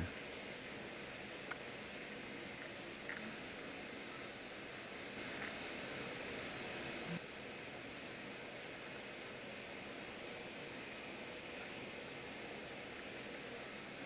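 Faint steady hiss of background noise, with a few soft, scattered ticks.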